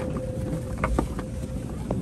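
Hanging strips rubbing and brushing against the phone and its microphone as the camera is pushed through them, with a few soft knocks and handling bumps.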